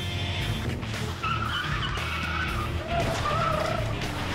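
Tyres squealing twice as a pickup truck is driven hard, with the engine running low underneath and dramatic music over it.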